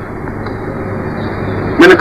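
A pause in a man's speech filled by steady background hiss with a low hum, the sound of an old microphone recording. His voice comes back near the end.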